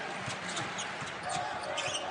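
Basketball bouncing on a hardwood court in irregular thuds, over steady arena crowd noise.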